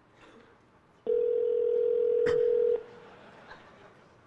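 Ringback tone of an outgoing call on the original iPhone, the sound of the number ringing at the other end: one steady ring tone of a little under two seconds, starting about a second in, with a short click partway through.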